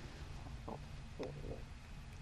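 Quiet room tone in a pause between sentences: a steady low hum with a couple of faint soft clicks about halfway through.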